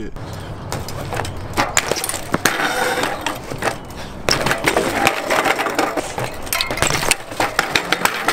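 BMX bike riding on a concrete skatepark, with tyre noise and a steady run of sharp clicks, knocks and metal rattles. Near the end come several louder knocks as rider and bike crash to the ground.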